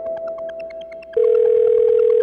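Soft synth music with a regular ticking beat, then about a second in a loud, steady telephone tone starts as an outgoing call is dialled: the tone heard in the earpiece while the call connects.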